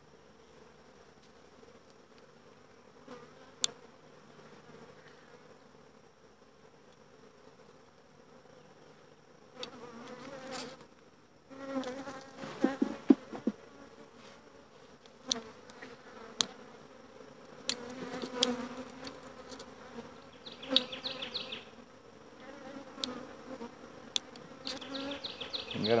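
Honeybees buzzing around an open hive, faint for the first ten seconds and louder after, as bee-covered frames are lifted out. Scattered sharp clicks and knocks from the handling of the wooden hive frames.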